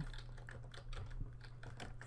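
Typing on a computer keyboard: a quick run of faint keystrokes as a single word is typed.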